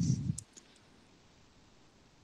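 Two short clicks about half a second in, as a voice trails off, then near silence: the quiet line of a video call.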